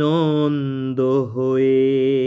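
A man singing the song's melody in long held notes, with a short break and a dip in pitch about a second in before a steady sustained note.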